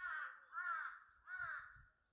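A crow cawing three times in quick succession, the caws about two-thirds of a second apart.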